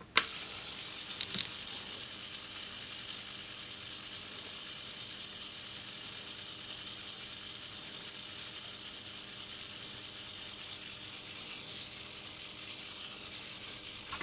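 Homemade electromagnetic actuator (copper coil on a ferrite core with a magnet) driven at 50 Hz AC, vibrating a short clamped steel strip. It starts with a click and then gives a steady low mains-frequency hum with a rapid, high, rattling buzz over it.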